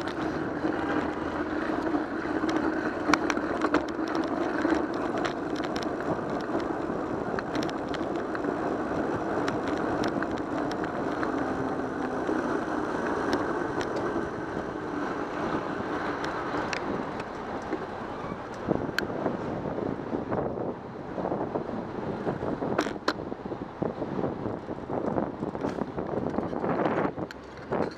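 Wind buffeting the microphone of a bicycle-mounted camera, mixed with road and traffic noise while riding. It is steady through the first two thirds, then thins and breaks up. Scattered sharp clicks and ticks run throughout.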